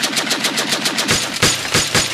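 Automatic gunfire in one long rapid burst of about ten shots a second. The shots come further apart in the second half.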